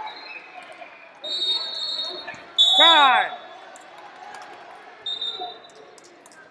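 Sounds of a wrestling bout in a large hall: short, shrill high tones several times, and one loud shout about three seconds in.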